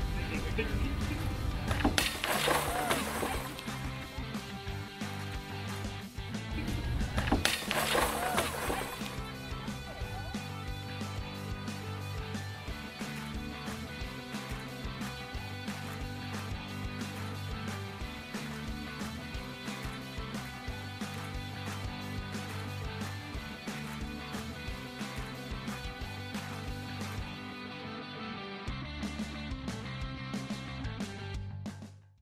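Background music with a steady beat throughout, broken twice, about two seconds in and again about seven and a half seconds in, by a loud crash lasting over a second as a big rock hits a Fortress Pure View tempered glass railing panel and the glass breaks.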